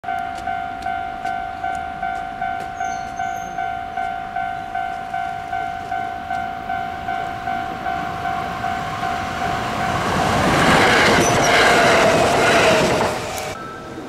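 Japanese level-crossing warning bell ringing steadily, about three strikes a second. From about ten seconds in, a Kintetsu 22600 series Ace limited-express electric train passes close by, much louder than the bell and drowning it out. The sound drops off suddenly near the end.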